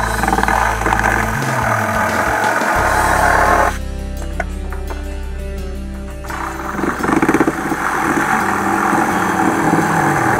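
Cordless reciprocating saw cutting into a wall in two long bursts, with a pause of about two and a half seconds between them, over background music.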